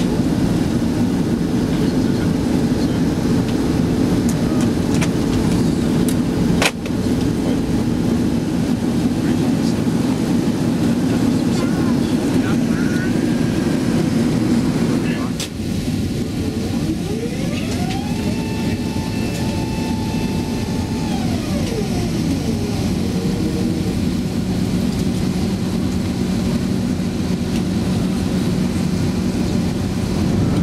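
Airbus A380 cabin noise during descent: a loud, steady, low rush of engines and airflow heard from a window seat. From the middle on, a whine rises in pitch, holds for a few seconds and falls away.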